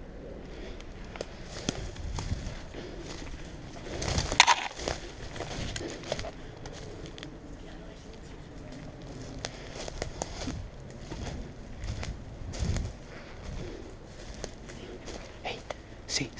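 Footsteps crunching through dry leaf litter and twigs, with clothing and gear rustling close to the microphone; the loudest burst of crackling comes about four seconds in.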